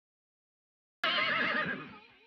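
A horse whinnying once: the call starts suddenly about a second in, out of complete silence, its pitch quivering rapidly, and it fades away over about a second.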